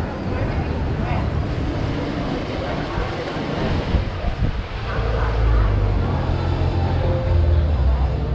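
Busy outdoor market background: scattered voices over a steady low rumble, which grows louder about five seconds in.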